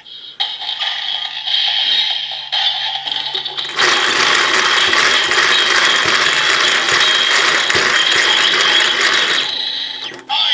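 DX Build Driver toy belt having its crank lever turned by hand, giving a loud, dense ratcheting gear sound from about four seconds in that stops just before the end. Before the cranking there is a quieter, steadier sound from the toy.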